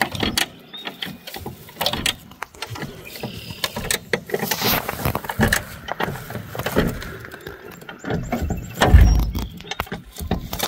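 A car bumper jack being let down under a rusted car body, giving irregular metal clicks and clanks as the car settles onto a log skid, with a heavy thump about nine seconds in.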